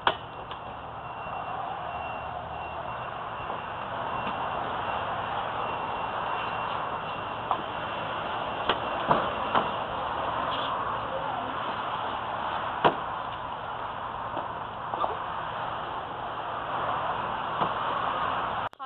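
Rocks thrown at a plastic sign, giving several sharp knocks scattered over a steady background hiss. The loudest come as a quick cluster of three about halfway through and a single one a little later.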